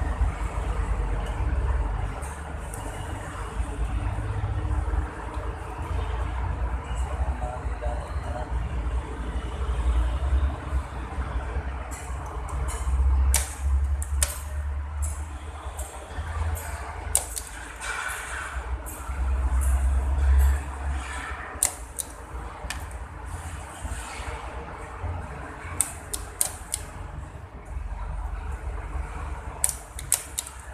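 Scattered sharp clicks and ticks of cables and connectors being handled and fitted into a rack panel, coming thicker from about twelve seconds in, over a continuous low rumble.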